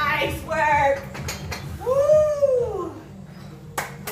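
A woman's voice calling out between exercises, with one long rising-then-falling call about halfway through. Sharp clicks come a little after the first second and near the end: dumbbells being set down and a hand clap.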